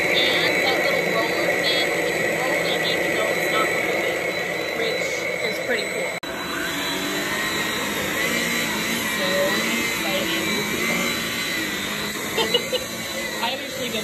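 Shark Rocket cordless stick vacuum running with a steady whine, its brush head moving over a hardwood floor. The sound drops out briefly about six seconds in, then the vacuum runs on over carpeted stairs.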